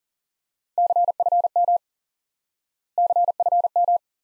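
Morse code at 40 words per minute: a single steady mid-pitched tone keyed on and off very fast, in two short groups about two seconds apart. These are the two elements just spoken, CFM ('confirm') sent twice, repeated in Morse for head-copy practice.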